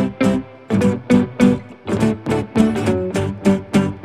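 Background music of plucked strings, likely acoustic guitar, playing a quick, steady rhythm.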